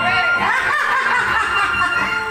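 A person chuckling and laughing, loud and close as if into a microphone, with faint music still going underneath.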